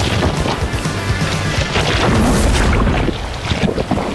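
Breaking surf crashing around a kayak, with wind rumbling on the microphone and background music laid underneath.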